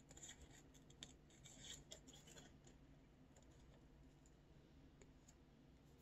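Faint snips of small metal scissors cutting thin paper, cutting out tiny drawn eye pieces. The snips come in a quick cluster in the first couple of seconds, and there are a few softer snips later.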